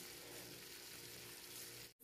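Faint, steady sizzling of beef liver strips frying in olive oil in a pan, cutting off suddenly near the end.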